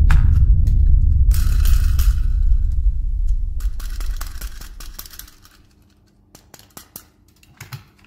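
A deep, loud rumble dies away over about five seconds, with a short crinkling rustle of packaging near two seconds in. Then come scattered small clicks and taps of toys and packaging being handled.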